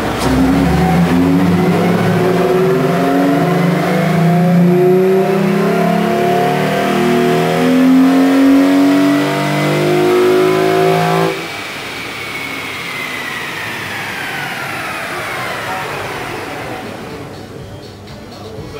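Hyundai Tiburon's 2.7-litre V6 at full throttle on a chassis dyno, pulling up through the rev range for about eleven seconds with a rising whine alongside. Then the throttle shuts abruptly, and the engine drops back while the tyres and dyno rollers spin down with a falling whine.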